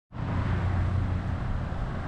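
Central air-conditioning condenser unit running: a steady low hum under a rush of fan noise.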